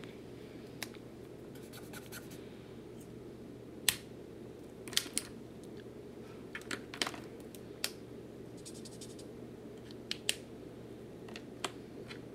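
Alcohol markers being uncapped, capped and swatched on paper: scattered sharp clicks, a few in quick pairs, with light scratching of the tips, over a faint steady room hum.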